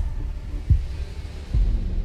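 Deep booming sound effect under an animated logo card: a low hum with three heavy thumps, at the start, about two-thirds of a second in, and about a second and a half in.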